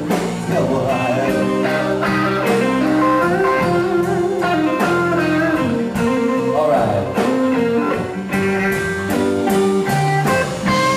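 Live blues band playing an instrumental stretch, an electric guitar carrying the tune over a drum kit.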